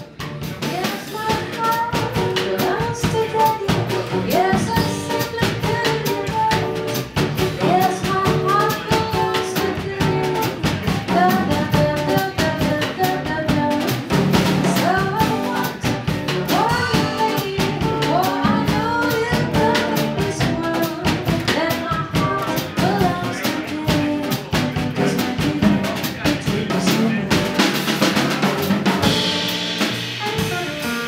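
Live small jazz band playing: drum kit, upright double bass and hollow-body electric guitar keeping a steady swing rhythm. The music starts abruptly at the opening.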